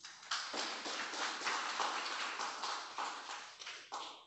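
Audience applauding, starting about a third of a second in and tapering off near the end.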